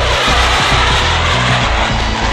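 Fighter jet roaring past at high speed, the rush of noise starting suddenly and fading away over about two seconds, over background music with a steady beat.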